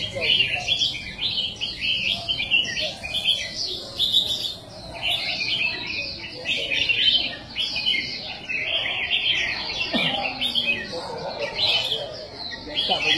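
Many caged red-whiskered bulbuls singing at once, a dense chorus of quick chirping phrases that overlap without a break, with people's voices murmuring underneath.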